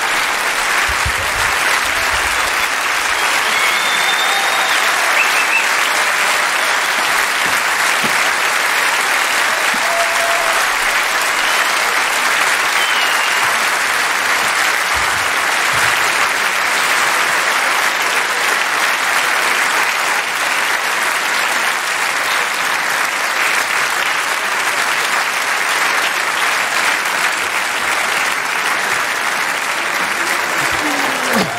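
Large audience applauding steadily, a long unbroken round of clapping.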